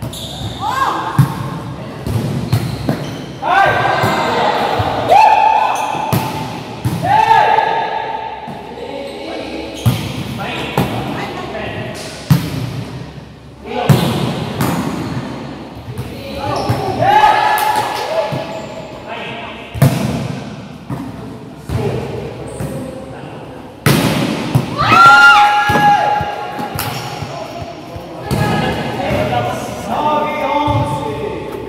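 Volleyball rally in a large gym: repeated sharp thuds of the ball being struck and hitting the court, echoing in the hall. Players shout and call out between the hits, loudest a little after the 24-second mark.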